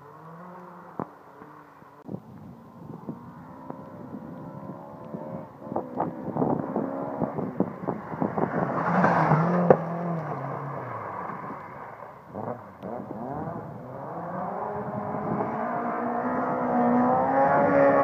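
Rally car engines on a wet stage: one car approaches revving hard through gear changes, with sharp pops, passing loudest about nine seconds in with a hiss of tyre spray. Another engine note then builds, louder still, toward the end.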